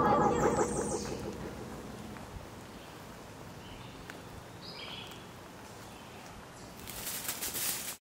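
The song fades out within the first second. It leaves faint forest ambience with a few short high chirps about four to five seconds in and a brief crackling rustle near the end.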